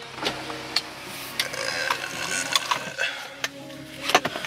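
Inside a parked car: a steady low hum of the engine running, with a few sharp clicks from inside the cabin.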